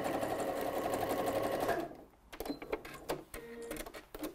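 Janome electric sewing machine running a zigzag stitch at a steady speed, its needle ticking rapidly, then stopping just under two seconds in. A few sharp clicks and knocks follow as the machine and fabric are handled.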